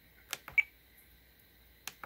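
Three quiet clicks of the Tango 2 radio transmitter's menu controls as settings are changed, the second followed by a short high beep from the radio.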